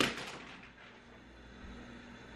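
A single sharp knock right at the start, fading over about half a second, then faint steady room tone.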